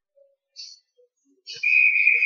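An ice hockey referee's whistle: one long, steady, high blast starting about one and a half seconds in, over faint rink noise.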